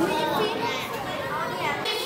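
Several children's voices talking and calling out at once, overlapping.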